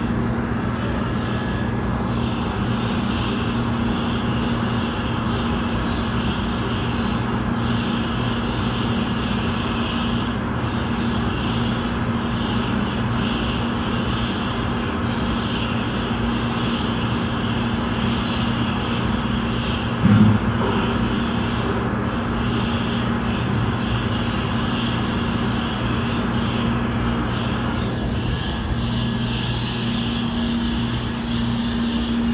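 A steady mechanical drone with a low hum that continues unbroken, and one brief thump about two-thirds of the way through.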